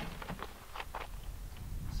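Faint scattered clicks and rustles of handling as the shooter settles behind a bipod-mounted rifle, over a low rumble.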